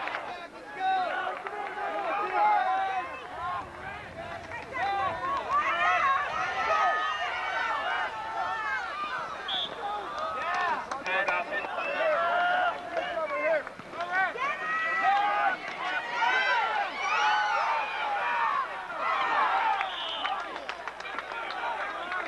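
Indistinct voices of spectators talking and calling out, several at once, with no clear words.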